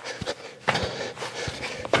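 Footfalls of a person's shoes landing and pushing off on indoor artificial turf during a side-to-side agility drill: a run of short, irregular thuds.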